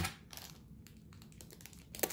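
Small plastic zip bags of metal mounting hardware being picked up and handled: quiet, irregular light clicks of the parts against each other and the table, with a faint crinkle of the plastic.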